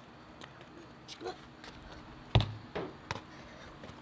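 A single sharp thump a little past the middle, followed by a couple of lighter clicks, over faint outdoor background.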